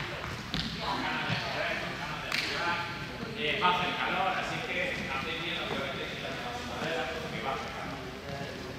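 Indistinct voices talking in the background, with a few sharp knocks in the first couple of seconds.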